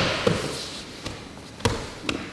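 Bodies and hands thudding on a foam grappling mat, with gi fabric rustling and scuffing as the two grapplers shift: a knock about a quarter second in and another near the end.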